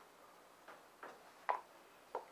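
Three faint, short clicks, the last and loudest about a second and a half in.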